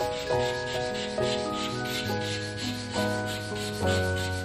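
Charcoal scratching and rubbing on paper in quick strokes as a dark background is laid in, heard under background music of held notes that change about every half second.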